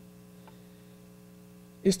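Faint steady electrical hum from the microphone and sound system, with a woman's voice coming back near the end.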